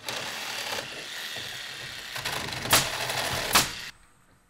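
Roofing work on a wooden roof deck: a steady mechanical rattle and hiss of work noise, with two sharp strikes about a second apart near the end.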